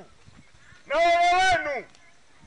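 A bleating farm animal, sheep or goat kind, gives one long call about a second in.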